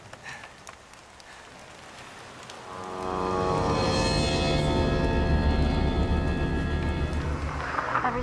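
A faint hiss, then dramatic background score swelling in about three seconds in: sustained chords over a deep bass that hold to the end.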